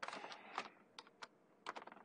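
Typing on a computer keyboard, faint: a quick run of keystrokes in the first half-second or so, then a few single key presses.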